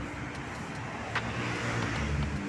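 Road traffic on a city street: a car or van driving past close by, its tyre and engine noise swelling toward the end, over a steady hum of traffic. There are a couple of short sharp taps, one at the start and one just after a second in.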